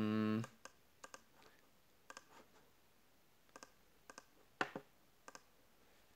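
Computer mouse clicking: a scattering of short, sharp clicks, several in quick pairs, the loudest a little past the middle.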